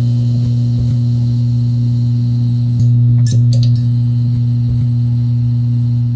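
Steady, loud low electrical buzz with a few brief crackles: the hum of a neon-sign sound effect as the sign lights up.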